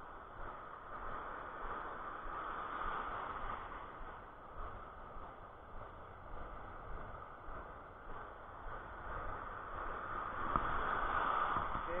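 Surf and foaming white water washing around, a steady rushing hiss that swells near the end.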